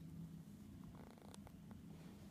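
A husky licking its foreleg: soft wet lapping clicks, clustered about a second in, over a faint steady low hum.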